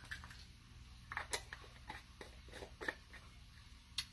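Faint, irregular clicks and taps of a spice jar being shaken and handled, over a low steady room hum.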